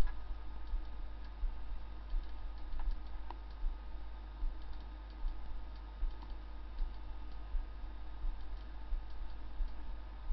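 Computer mouse clicking now and then, with a sharper click at the start, over a steady low electrical hum.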